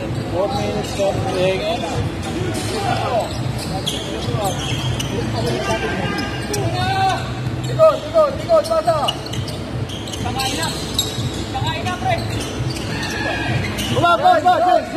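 Basketball game in a large gym: a ball bouncing on the hardwood court amid sharp knocks and footfalls, with players and spectators shouting. The shouts are loudest about eight to nine seconds in.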